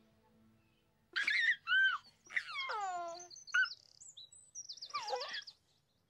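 Birds chirping and whistling in a string of short calls that swoop up and down in pitch, including one long falling whistle, ending in a fast trill. The calls come in after the music fades out.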